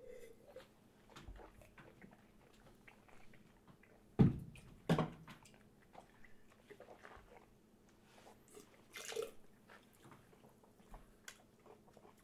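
Faint mouth sounds of red wine being sipped and held in the mouth: small wet clicks and lip noises, with two louder short sounds about a second apart around four seconds in and a smaller one near nine seconds.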